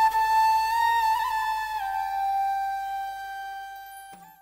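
Vietnamese bamboo flute (sáo trúc) playing one long held note with a small ornament, stepping down a little about two seconds in and fading away as the final phrase of the tune.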